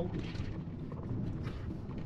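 Tyre and road noise inside a Tesla's cabin as it drives on its own on a paved road: a steady low rumble with a few faint ticks and no engine sound.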